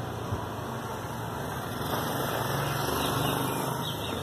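Street traffic: a motor vehicle's engine running with a steady low hum, growing a little louder partway through.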